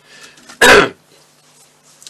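A person coughing once, a single short, loud cough a little over half a second in.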